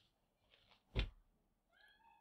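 Dry-erase marker writing on a whiteboard: a faint scratch of strokes, a sharp knock about a second in, and a faint squeak near the end.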